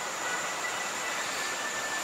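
Steady background hiss with a faint thin high whine in it.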